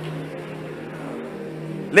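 A steady low hum holding one pitch, with a short laugh right at the end.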